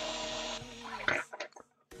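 Small cordless electric screwdriver running with a steady whine while driving a beadlock screw into an RC crawler wheel, winding down about half a second in, followed by a few light clicks.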